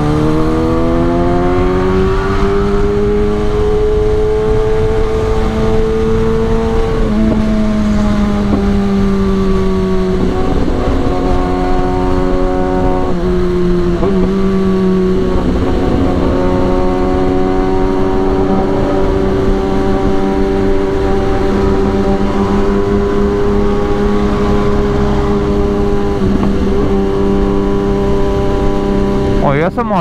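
Kawasaki ZX-10R's inline-four engine heard from the rider's seat over wind rush. Its note climbs for the first several seconds, steps down a few times, then holds at a fairly steady cruising pitch.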